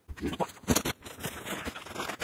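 Rustling and crackling of shipping packaging being unpacked, a cardboard box and a rigid plastic bubble mailer, with a short laugh under a second in.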